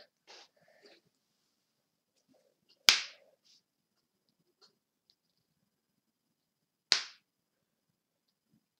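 Two sharp single clicks about four seconds apart, each dying away quickly: the online chess board's move sound, the second as the opponent's knight move lands on the board.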